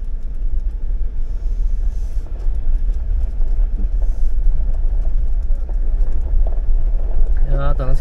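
Jeep Wrangler driving slowly along a gravel lane, heard from its bonnet: a steady low rumble of engine, tyres and wind, with scattered small ticks from the gravel.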